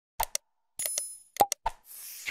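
Subscribe-button animation sound effects: quick pairs of mouse-style clicks, a short bell ding about a second in, and a rushing swoosh starting near the end.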